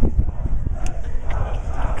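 Indistinct chatter from people standing and sitting around, over a steady low rumble, with a short click about a second in.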